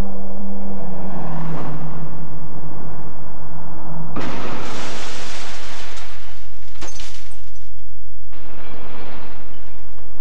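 Crash-test car approaching with a steady drone that falls slightly in pitch. About four seconds in it strikes a concrete barrier: a sudden loud crash lasting about two seconds, then a sharp click and a shorter noisy burst near the end. A low electrical hum runs underneath throughout.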